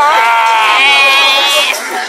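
A woman's long, high-pitched squeal that wavers and trembles, held for about a second and a half before fading. Crowd chatter runs under it.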